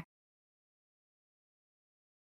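Near silence: the soundtrack is blank, with no audible sound at all.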